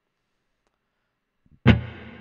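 Silence, then near the end a D-flat major seven chord played on an electric guitar: a sudden, loud attack that rings on as it fades.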